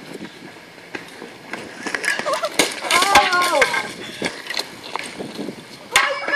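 Riderless bicycle rolling down an asphalt slope, rattling and clattering with sharp knocks, with a short yell about three seconds in.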